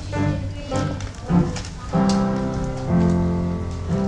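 A children's ensemble of acoustic guitars with piano playing music, sustained chords changing about once a second.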